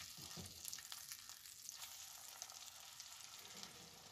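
Cauliflower fritters frying in butter and oil in a nonstick pan: a faint, steady crackling sizzle, with a few light knocks as a silicone spatula works under them.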